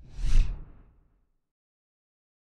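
A single whoosh sound effect with a deep low rumble under a hiss, swelling and fading away within about a second.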